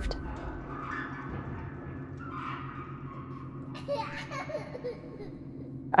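Faint child-like giggling and breathy whispering over a low steady hum, with a short giggle about four seconds in.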